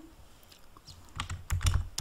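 Typing on a large-print computer keyboard with yellow keys. After a quiet first second comes a quick run of key clicks.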